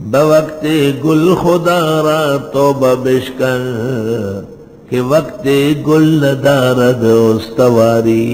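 A man reciting a Quranic verse in Arabic in a slow, melodic chanting style, holding long notes. It falls into two long phrases with a brief pause about halfway through.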